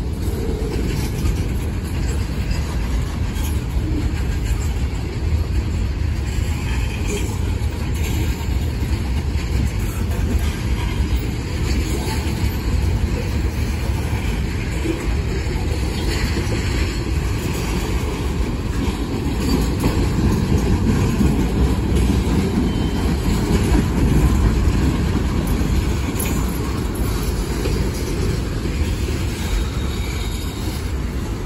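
Mixed freight cars of a long manifest train rolling past a grade crossing: a continuous low rumble and rattle of steel wheels on the rails. It swells a little louder about two-thirds of the way through.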